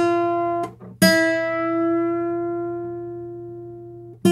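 Steel-string acoustic guitar: a single note on the second string is plucked and cut short, then plucked again at about a second in and bent up a half step from E to F, held there and ringing as it slowly fades for about three seconds.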